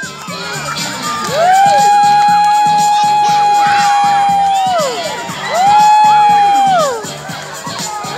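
A crowd of children calling out long, drawn-out cries together, each rising, held steady and then falling: a long one of about three and a half seconds, a shorter one after it, and another starting near the end. Background music with a steady beat plays underneath.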